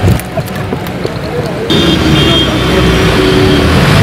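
Car engines of a slow-moving SUV convoy mixed with a murmuring crowd. About two seconds in, the sound cuts abruptly to a louder, steady engine hum with a few held tones over it.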